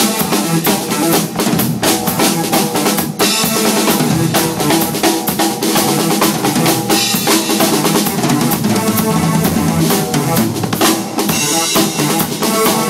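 Drum kit played live, with rapid snare, bass drum and cymbal strikes. Sustained synthesizer tones run underneath.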